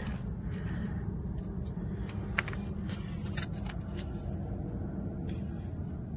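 Crickets chirping in a steady, evenly pulsing high trill over a low, steady rumble, with a couple of faint clicks.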